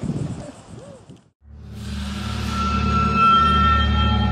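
After a brief silence, ominous soundtrack music fades in and builds: a low sustained drone with a few high held tones above it.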